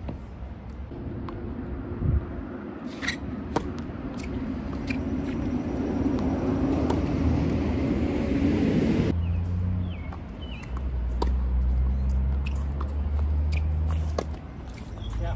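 A few sharp knocks of tennis balls being hit or bounced, over a rushing noise that builds and stops suddenly about nine seconds in. After that a steady low engine-like hum runs.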